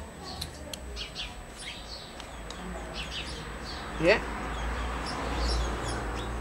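Small birds chirping in the background: many short, high chirps scattered throughout, over a steady low hum.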